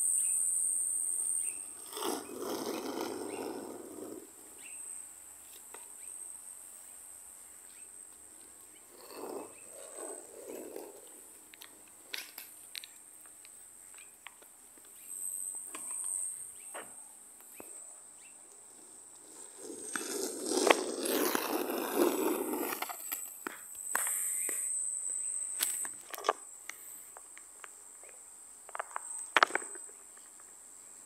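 Skateboard wheels rolling over an asphalt path in two runs of a few seconds, about two seconds in and about twenty seconds in, with scattered clicks and taps between them. A steady high-pitched insect drone runs throughout, loudest at the very start.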